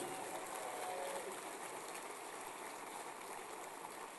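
Faint audience applause in a theater, a steady patter that slowly dies away.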